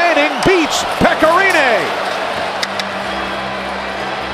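Ice hockey arena broadcast sound: voices with strongly swooping pitch over crowd noise for about the first two seconds, with a few sharp clicks. It then settles into a steady low hum.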